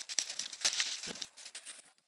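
Dry leaves and twigs rustling and crackling in a quick run of small irregular clicks, thinning out and fading toward the end.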